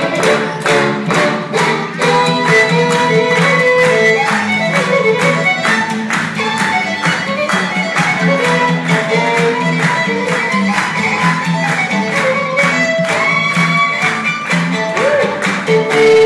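Live bluegrass fiddle playing a fast tune over upright bass and rhythm backing, with a quick steady beat. Near the end the fiddle plays sliding notes.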